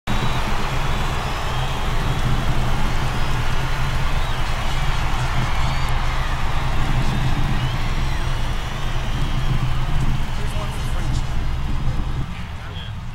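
Motorboat engine running steadily under way, mixed with the rush of churning wake water and wind.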